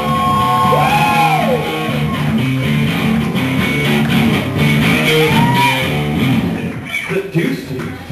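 Live rock band playing: electric guitar with long bent notes over steady bass and drums. The playing thins out near the end.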